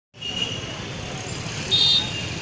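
Busy street traffic noise, with a short high-pitched vehicle horn beep near the end that is the loudest sound.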